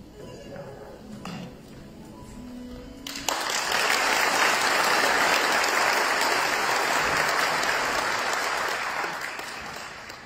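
An audience applauding in a large hall. The clapping breaks out about three seconds in, holds steady and dies away near the end, over quiet background music.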